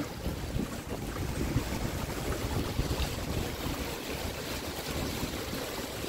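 Courtyard fountain: small water jets and water spilling over a tiled ledge into a shallow pool, making a steady splashing hiss. Wind rumbles on the microphone underneath.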